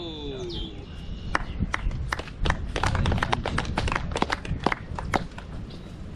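A few people clapping: scattered, irregular handclaps lasting about four seconds, starting about a second in.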